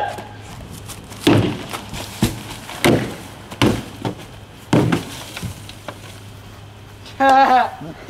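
Hockey stick striking a heavy-duty plastic trash can: about five hard knocks, roughly a second apart. A voice shouts near the end.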